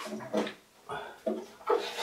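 A man's voice making short, drawn-out vocal sounds without clear words, in a few separate bits with a brief pause in between.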